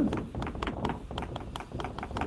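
Chalk writing on a blackboard: a quick, irregular run of taps and scratches as the chalk strikes and drags across the slate.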